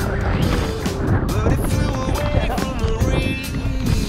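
Background music: a song with a held, gliding melody line, likely sung, over a steady low accompaniment.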